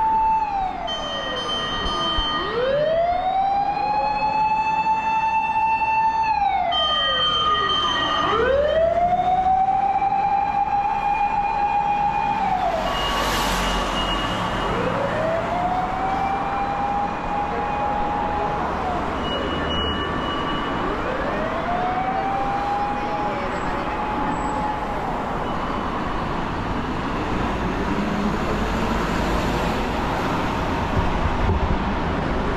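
Emergency-vehicle siren wailing in slow rises and falls, one cycle every five or six seconds, over steady street traffic. The wail grows fainter through the second half and dies away near the end. There is a short hiss about halfway through.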